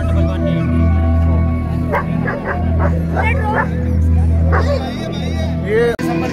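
Background music with a steady bass line, with a dog barking several times through the middle.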